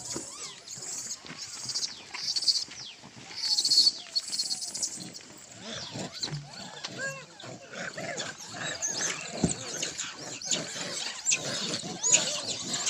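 Rhesus macaque troop feeding, with scattered short calls and squeals from about the middle on. A pulsing high hiss runs through the first four seconds.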